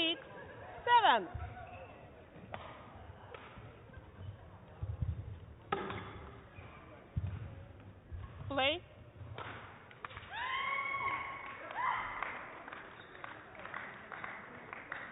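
Indoor badminton hall between rallies: a few sharp falling squeaks, several thumps and short shouts, the shouts mostly near the end.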